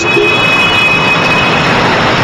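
Loud, steady city street traffic noise, with a faint high whine through the first second and a half.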